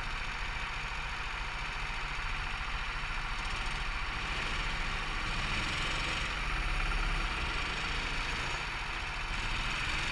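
Go-kart engines idling together on the grid, a steady running sound, with a slight swell in level about seven seconds in.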